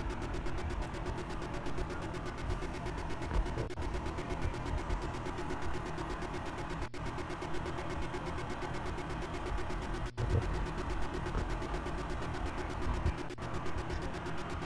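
Steady low rumble of outdoor street background with a vehicle engine running, with a few very brief dropouts in the sound.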